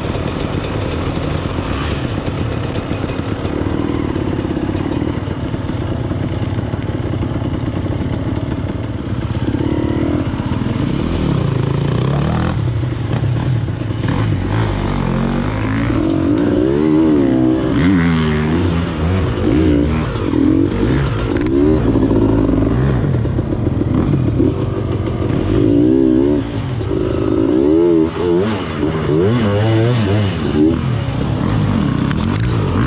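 Enduro dirt bike engine heard close up, ridden off-road. It is steady at first, then revs up and down repeatedly through the second half as the throttle is worked while it is ridden through a shallow stream.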